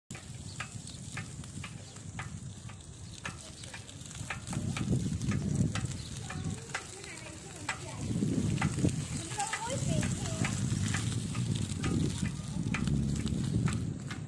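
Street noise picked up on a moving bicycle after rain: gusts of low rumbling from about four seconds in, growing stronger from about eight seconds. Scattered sharp clicks and a faint high steady tone run beneath, with a few short chirp-like tones near ten seconds.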